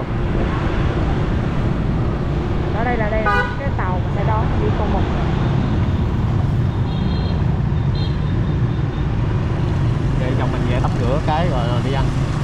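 Motor scooter riding through town traffic: a steady, heavy low rumble of engine and road noise, with brief snatches of voices about three seconds in and again near the end.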